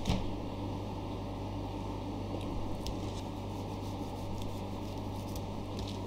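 Chef's knife trimming fat and sinew from a whole raw beef sirloin on a plastic cutting board: faint soft squishing of meat being cut and pulled, with a few light clicks, over a steady low hum.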